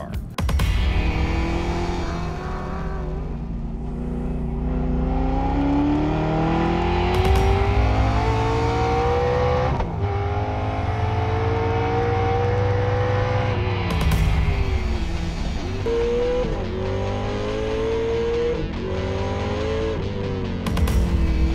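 A race car's engine pulling hard under full throttle, its pitch climbing steadily and dropping sharply at each upshift, several times over.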